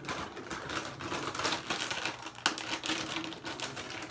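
Rapid, dense clicking and rustling of things being handled close to the microphone.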